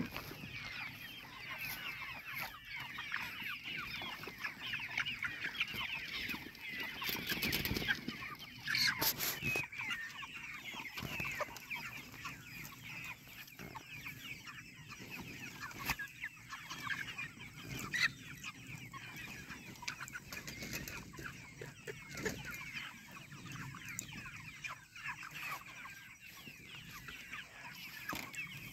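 A flock of chickens penned in a chicken tractor, many birds calling at once in a steady overlapping chatter of short high calls. A few sharp knocks come about eight to nine seconds in.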